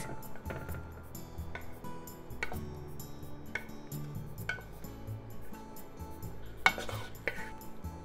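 A wooden spatula scraping and knocking against a frying pan as stir-fried vegetables slide onto a ceramic plate: scattered clicks and taps, with one sharper knock late on, over soft background music.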